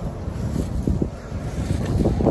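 Wind buffeting the microphone: a low, rough rumble with no voice over it.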